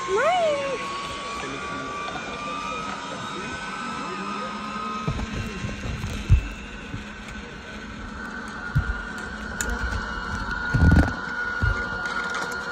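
Steady thin whine of a zipline trolley's pulleys running along the steel cable, the pitch slowly rising, with a few dull low thumps.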